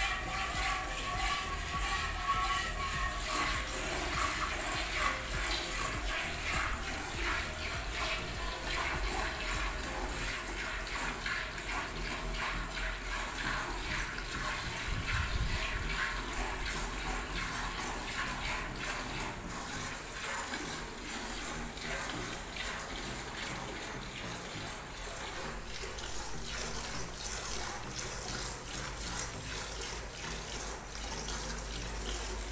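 Hand milking: milk squirting from a cow's teats into a steel bucket in quick, rhythmic strokes. A tune plays over the first few seconds.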